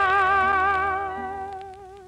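Tenor voice holding the final note of a sentimental ballad with a steady vibrato over orchestral accompaniment, dying away over the second half.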